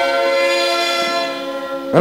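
A sikuris ensemble of Aymara panpipes (sikus) holding one long, breathy chord of many notes, the closing chord of the piece, which eases off near the end.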